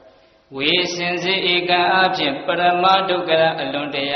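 A Buddhist monk's voice chanting in long, held tones, taking up again after a short pause about half a second in.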